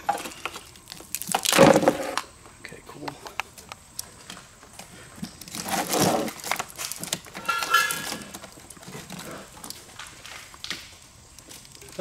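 A braided wiring harness being pulled and worked through a truck's engine bay to free a snagged wire: irregular rustling, scraping and light knocks of the loom and its plastic connectors against the engine. The handling is loudest about a second and a half in and again around six seconds.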